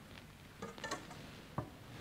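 Faint small clicks and knocks of objects being handled at the tabernacle, a cluster just over half a second in and one sharp click about a second and a half in.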